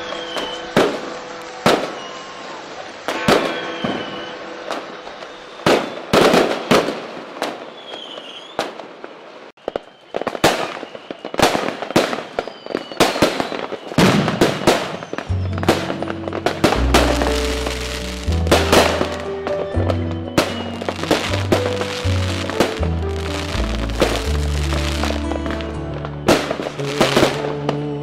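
Fireworks going off in a string of sharp bangs and crackles, with a few short whistles in the first half. Music plays underneath, and a deep bass line comes in about halfway through.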